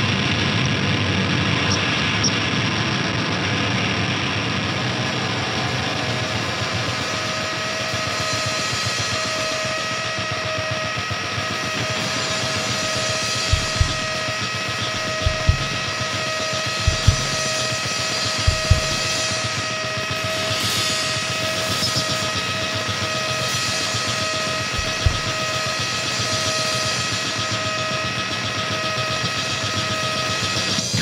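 Live rock band playing a loud instrumental passage: a dense wall of distorted electric guitar with drums. A steady high note holds from about a quarter of the way in, and a handful of heavy drum hits land in the middle.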